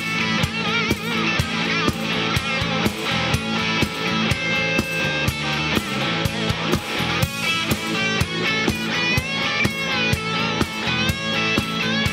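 Live southern-rock band playing an instrumental break: an electric guitar lead with bent, wavering notes over a drum kit, bass and rhythm guitar, with a steady beat.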